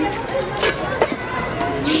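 Indistinct voices talking, with a single sharp click about a second in.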